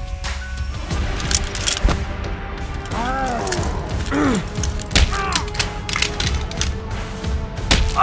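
Cartoon fight sound effects over dramatic background music: a string of sharp punch and thud impacts, the loudest about five seconds in, with short strained grunts around three to four seconds in.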